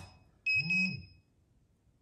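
Pudibei NR-750 Geiger counter giving one short high-pitched alarm beep about half a second in. Its dose-rate alarm is sounding because the reading is still above its 0.50 µSv/h alarm threshold from a smoke detector's americium-241 source. It then falls silent as the reading drops below the threshold.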